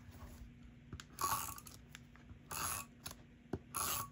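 Three short crackly rasps about a second apart, a tape runner laying adhesive onto cardstock, with a few light clicks of paper handling between.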